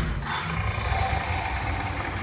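Stage-show sound effect: a low rumble with a steady high hiss that comes in about half a second in.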